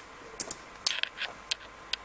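Sharp clicks of a laptop's buttons: a quick double-click a little under half a second in, then about five more single clicks spread across the rest of the two seconds.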